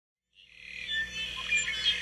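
Birds chirping, fading in from silence about half a second in, with short high chirps and trills.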